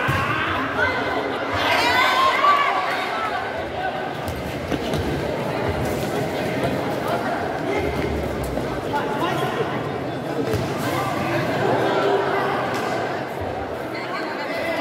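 A crowd of spectators chattering and calling out in a large covered sports hall during a futsal match, with a louder burst of shouting about two seconds in.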